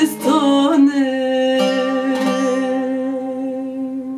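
The closing bars of a song: a voice sings a wavering line, then holds one long final note over plucked strings, slowly dying away.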